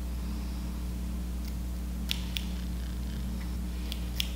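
Small scissors snipping the lace of a lace-front wig along the hairline: a few short, faint snips, two close together about two seconds in and one near the end, over a steady low hum.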